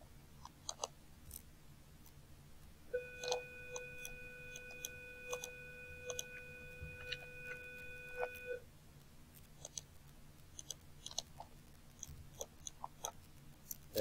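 Faint, scattered computer mouse clicks. From about three seconds in, a steady electronic beep-like tone sounds for about five and a half seconds, then cuts off.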